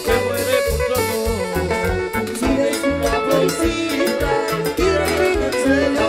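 Live band music for a Peruvian cumbia act, mostly instrumental. A steady bass line and regular drum beat run under a held melody.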